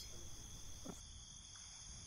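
Faint steady background of crickets chirring, a continuous high-pitched night ambience.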